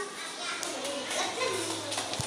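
Background chatter of children's voices, several talking at once in a school room.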